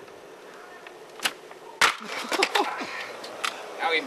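Skateboard riding down stone steps: a sharp click about a second in, then a loud hard impact near the middle followed by a brief clatter of board and wheels.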